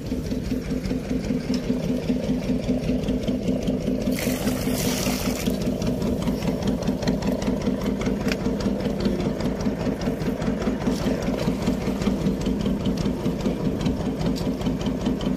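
A fishing boat's engine running steadily with a rapid, even chugging beat. About four seconds in, a brief splash of water as the pot of jellyfish is tipped into the sea.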